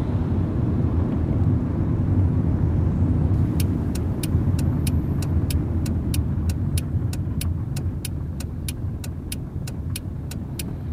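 Car cabin noise of a car driving, engine and tyre rumble, with a turn indicator starting to tick evenly about three and a half seconds in, roughly three clicks a second. The rumble eases a little towards the end as the car slows.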